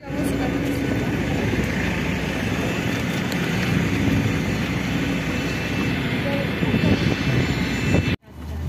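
Steady jet aircraft noise on an airport apron: a continuous rushing hum that holds even throughout.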